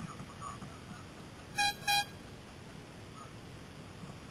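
Two short horn toots in quick succession about one and a half seconds in, each a quarter second or so long and fairly high-pitched, over a low steady rumble.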